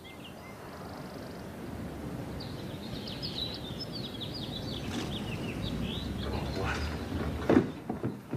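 Street ambience: birds chirping for a couple of seconds over the low rumble of an old car that grows louder as it approaches, then a few sharp knocks near the end.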